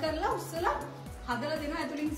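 A woman speaking over background music with a steady low accompaniment; her speech pauses briefly about a second in.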